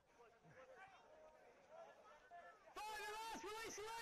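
Faint calls from players and spectators across a rugby league field, then, just under three seconds in, loud high-pitched shouting from several voices at once that lasts for more than a second.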